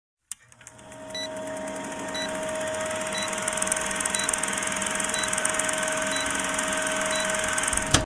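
Film-leader countdown sound effect: an old film projector running with a steady whir, hum and rapid clatter, and a short high beep once each second as the numbers count down. It fades in over the first second and cuts off suddenly at the end.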